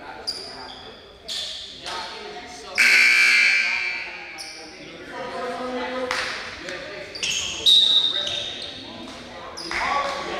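Echoing gymnasium sound during a stoppage in play: voices carry through the hall, a loud buzzer-like tone sounds for a little over a second about three seconds in, and a short high whistle-like tone comes near the end.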